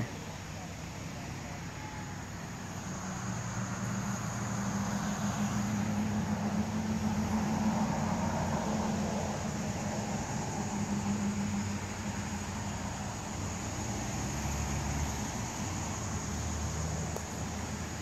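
A motor vehicle's engine hum passing by: it swells over several seconds, peaks a third of the way in, then fades away.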